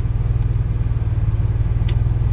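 A car idling with its engine's steady low rumble, heard from inside the cabin. There are two brief clicks, one at the start and one near the end.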